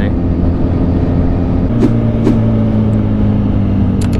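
Motorcycle engine, a 2010 Yamaha FZ1-N's inline-four, running at road speed under a steady rush of wind noise; its note shifts about halfway through, with two short clicks just after.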